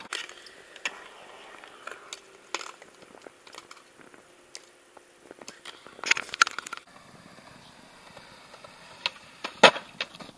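Skateboard rolling on concrete with scattered clicks from the wheels and deck, a clattering run of knocks about six seconds in, and one loud sharp crack near the end as the board slams down on a bailed frontside flip.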